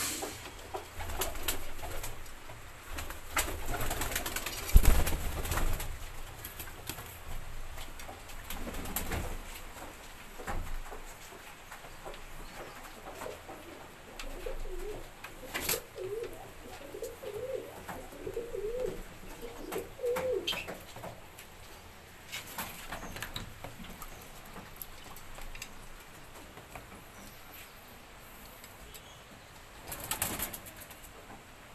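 Domestic pigeons cooing, a run of low wavering coos around the middle. Scattered clicks and knocks, with a loud thump about five seconds in.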